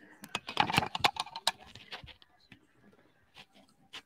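Scattered sharp clicks and rustles with faint, low voices in the first two seconds, then near quiet apart from a couple of clicks near the end.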